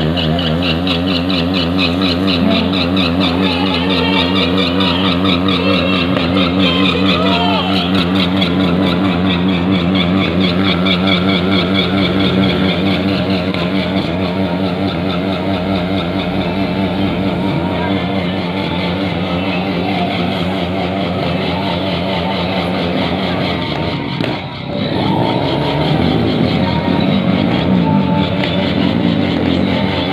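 Sport motorcycle engine running at held revs, its pitch wavering up and down as the stunt rider works the throttle. About 24 seconds in it briefly drops away, then comes back with a more changeable note.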